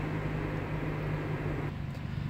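A car heard from inside the cabin while driving: a steady low engine hum under road and tyre noise. The road noise falls away near the end as the car slows to a stop at a traffic light.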